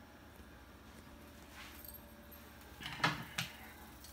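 A couple of sharp metal clicks about three seconds in as a steel ISO 20 ER16 tool holder is handled, over a faint steady low hum.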